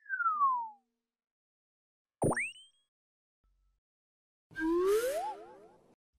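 Cartoon-style sound effects added in editing: a falling whistle-like glide at the start, a quick upward zip a little after two seconds, and a run of rising, wobbling whistle tones with a hiss near the end. In between there is dead silence.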